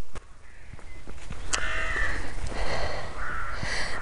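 A crow cawing: a hoarse call about a second and a half in and a shorter one near the end, over a low rumble.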